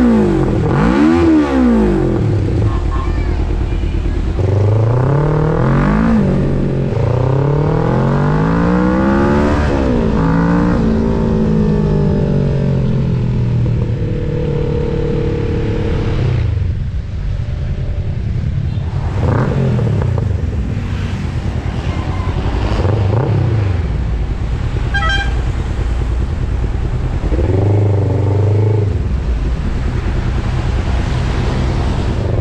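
Kawasaki Ninja 650 parallel-twin engine, freshly flash-tuned and fitted with a Two Brothers aftermarket exhaust, accelerating and shifting up, its revs rising and falling again and again. It settles to a steady idle near the end.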